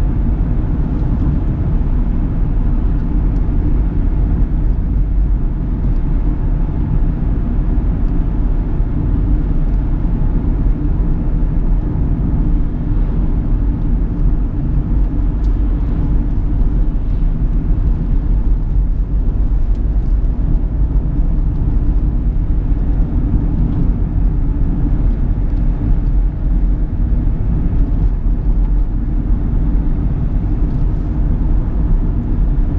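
Interior cabin noise of a 2010 Chevrolet Captiva 2.0 VCDi turbodiesel cruising at a steady speed: engine and tyre noise heard from inside the car, steady and mostly low-pitched.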